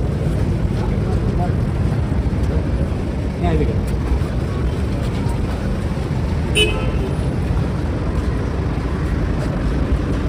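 Busy street noise: steady traffic and a crowd's voices, with a short car horn toot about six and a half seconds in.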